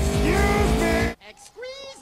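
Motorcycle engines revving hard in a film soundtrack for about a second, with a pitch that rises and falls, then cutting off abruptly; a short, quieter spoken line follows.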